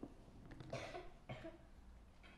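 A faint cough about half a second in, followed by a shorter, fainter one.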